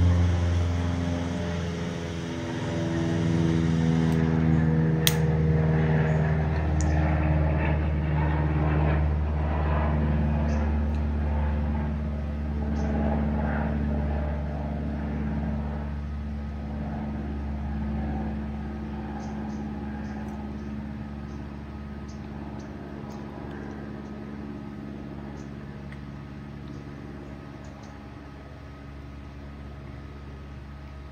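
A low, steady mechanical drone made of several held tones. Its pitch shifts a little in the first seconds, and it slowly fades toward the end.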